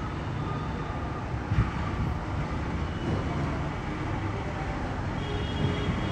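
Steady low background rumble with faint thin tones over it, and a soft thump about a second and a half in.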